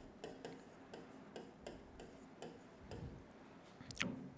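Faint, irregular clicks and taps of a stylus on an interactive display screen during handwriting, roughly three a second.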